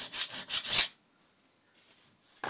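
Flat hand file drawn in several quick strokes across the edge of a hardened steel block, a file test of how hard the steel is. The last strokes are the loudest, and the filing stops about a second in.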